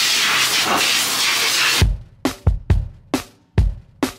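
Dog grooming blower (high-velocity pet dryer) running with a steady rush of air, cut off suddenly about two seconds in. Background music with sharp drum hits follows.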